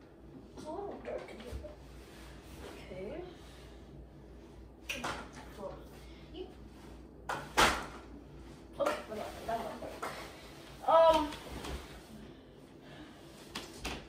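Window blinds being handled: several sharp clacks and knocks, the loudest about halfway through, with a few short vocal sounds between them.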